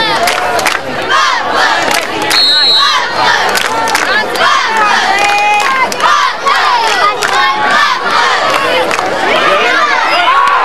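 Football crowd yelling and cheering, many voices shouting at once, with a brief high steady tone about two and a half seconds in.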